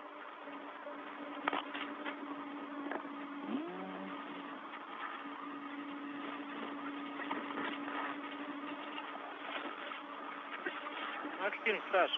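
Steady hiss of a narrow-band space-to-ground radio channel with a constant low hum and a few scattered clicks, and faint snatches of voice on the loop.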